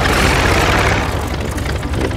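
Cartoon sound effect of a small propeller aeroplane's engine running: a loud rushing noise that eases after about a second, over a steady low rumble.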